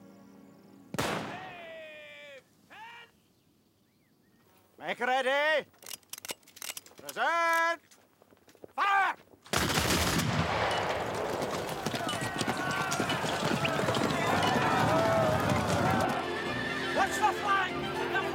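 A few long shouted calls ring out over near quiet. About halfway in, a volley of flintlock muskets bursts out suddenly and runs on for about six seconds as a dense crackle of many shots, with yelling through it. Orchestral film music takes over near the end.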